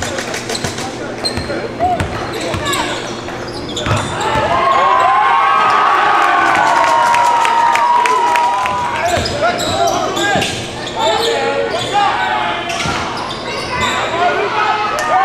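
Live basketball game sounds in a gym: a ball bouncing on the hardwood court as it is dribbled, with indistinct shouting voices echoing in the hall, loudest from about four to nine seconds in.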